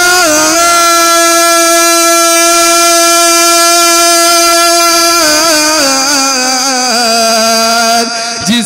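A man singing a manqabat unaccompanied, holding one long note for about five seconds, then breaking into ornamented turns that step down in pitch toward the end.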